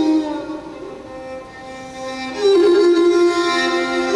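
Instrumental music: a slow, sustained melody on a bowed string instrument. It fades down soon after the start and comes back loud about two and a half seconds in.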